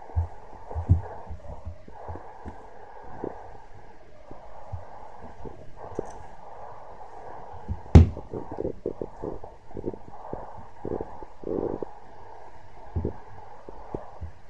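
A small dog play-fighting at close range: low growly noises and snuffling, with irregular scuffles and knocks on a wooden floor and one sharp knock about eight seconds in.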